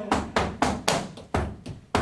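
Percussion in a song's short break between sung lines: about seven sharp hits in an uneven rhythm, each dying away quickly.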